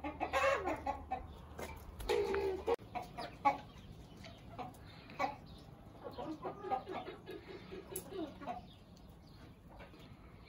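A flock of domestic chickens clucking, with many short repeated calls, loudest in the first three seconds and thinning out after.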